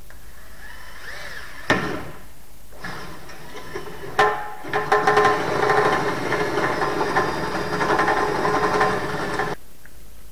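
Cordless drill running on the aircraft's engine mount: a sharp click, a short run, another click, then a longer run of about five seconds with a steady motor whine that cuts off suddenly.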